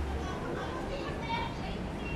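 Background voices of passers-by talking, not close to the microphone, over steady street noise; a low vehicle rumble dies away in the first half-second.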